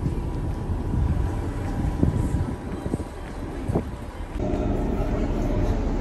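Wind buffeting a phone microphone on an open ship deck, a low rumbling noise with a few soft knocks. About two-thirds of the way through, a steady hum of several tones sets in.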